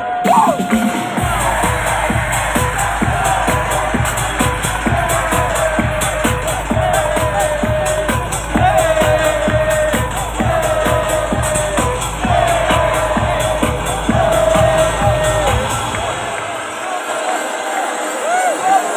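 Loud live music over a concert sound system, heard from within the crowd: a steady beat with heavy bass and a short melodic phrase repeating about every two seconds, with the crowd cheering. Near the end the beat and bass drop out.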